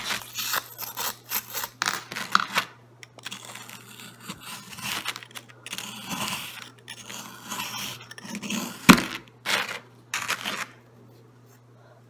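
Metal screwdriver scraping, gouging and crunching into a crumbly dig-kit block in quick irregular strokes, with a sharp knock about nine seconds in.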